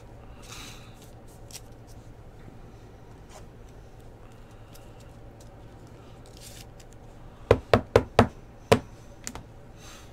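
A trading card handled and slid into a rigid plastic top loader, with faint rustling of plastic and card. About three-quarters of the way through come five sharp knocks in quick succession, then one fainter one.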